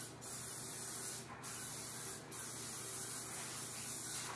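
Aerosol cooking-oil spray hissing onto a metal muffin pan to grease it, in three bursts of about a second each with short breaks between.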